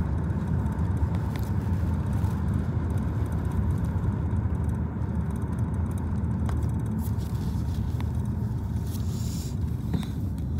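Steady low rumble inside a car's cabin, with a few faint clicks as trading cards are handled.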